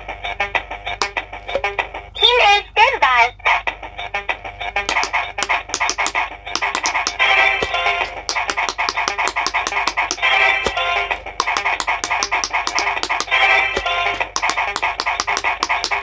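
Electronic quick-push pop-it game playing its tinny melody and sound effects while its silicone bubble buttons are pressed in quick succession, each press a sharp click. A warbling sound effect plays about two seconds in.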